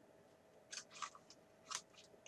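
Faint crackles of clear plastic stamps and their carrier sheet being handled, a few short crinkly clicks in the second half.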